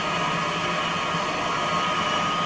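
Stepper-motor-driven rotor of four LED strips on a mechanical television spinning at a steady, synchronised speed: an even whir with a low hum and a higher steady tone in it.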